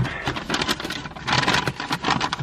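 Takeaway food packaging rustling and crinkling as it is opened and handled, an irregular crackle that gets louder for a moment past the middle.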